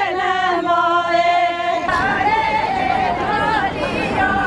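Women's voices singing a slow melody with long held notes, which breaks off about two seconds in to a crowd of voices talking and calling over outdoor background noise.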